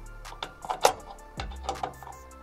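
Background music with a steady beat, over several sharp metallic clicks of a hex key on a screw of a DeWalt DWS780 mitre saw's blade guard as it is tightened by hand. The loudest click comes a little under a second in, with two more near the end.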